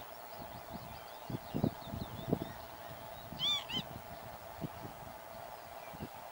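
A bird gives two short honking calls in quick succession about midway, the loudest sound here. Beneath it are soft, irregular low crunches from a water vole feeding on grass at close range, and faint high chirping of small birds in the first half.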